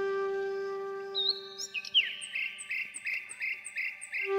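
Film background music: a long held wind-instrument note fades away over the first two seconds. Over it, from about a second in, come quick bird-like chirps repeated evenly about three times a second.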